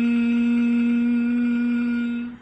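A man's voice chanting a long meditative 'om', one hummed note held on a steady pitch.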